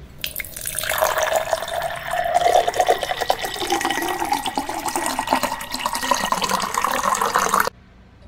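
Water sloshing and gulping in an aluminium mug held at the mouth while a full mug of water is drunk down, stopping suddenly near the end.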